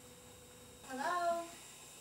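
A person's short voiced hum, about half a second long, starting about a second in, its pitch rising and then levelling off, over a faint steady room hum.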